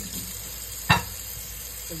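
Water from a kitchen tap running into a stainless steel sink as pears are rinsed under the stream by gloved hands, a steady hiss. A single sharp knock a little under a second in stands out above it.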